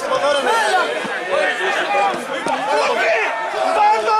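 Several voices shouting and calling over one another at an amateur football match, spectators and players reacting to an attack on goal.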